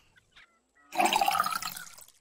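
Water poured from a bottle into a mug, a gurgling pour that starts about a second in and lasts about a second.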